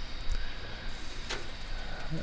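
Low, steady background noise with one short, sharp click a little past halfway.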